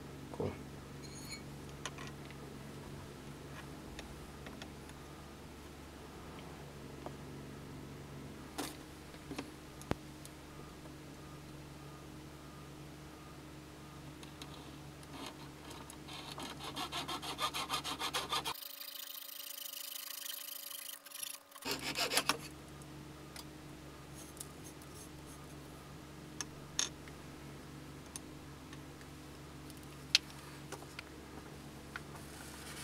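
A jeweller's saw cutting through a coil of pure gold wire, a run of quick back-and-forth strokes lasting several seconds about halfway through. The rest is quiet, with a few light clicks and taps.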